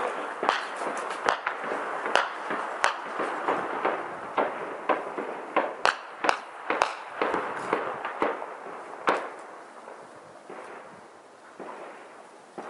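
Gunfire in an urban firefight: many irregular shots, some in quick runs, echoing between buildings. The firing thins out and grows quieter after about nine seconds.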